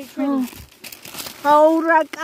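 Plastic rubbish crinkling and rustling as it is handled, for just under a second in the middle, between stretches of a voice chanting "go, go, go".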